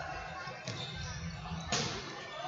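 A football kicked hard once in a shot on goal, a sharp smack near the end, over low background noise from the hall.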